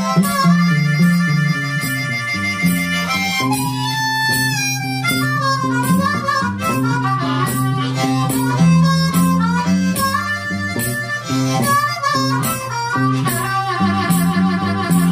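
Blues harmonica played into a microphone, with held notes and a long bent note about four seconds in, over a steady strummed acoustic guitar rhythm.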